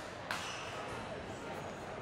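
Steady background noise of a large indoor badminton hall, with one sharp tap about a third of a second in.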